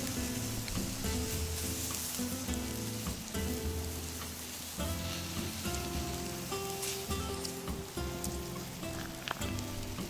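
Pickled vegetables and beaten egg sizzling in butter in a seasoned frying pan, with background music playing over it.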